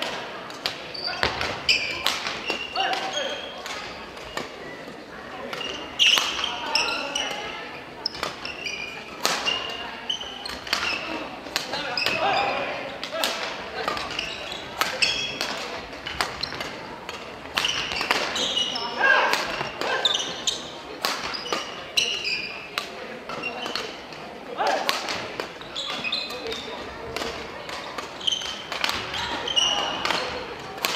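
Badminton rallies in a large gymnasium: many sharp racket hits on the shuttlecock and footfalls on the wooden court floor, over steady background chatter and calls from players and spectators.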